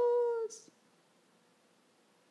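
The tail of a woman's spoken word, a held vowel ending in a short 's' hiss, then near silence: room tone.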